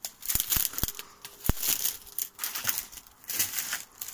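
Footsteps crunching and rustling through dry undergrowth and debris in irregular bursts, with a few sharp clicks in the first second and a half.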